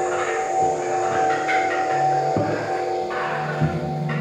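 Experimental electronic music played live: several steady held tones over a low note that drops in and out, with crackling noisy textures and a short click near the end.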